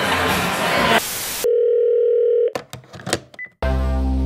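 Restaurant table chatter and laughter, cut off about a second in by a short burst of noise and then a steady electronic tone lasting about a second. A few clicks and a brief high beep follow, and near the end the outro music starts with sustained notes.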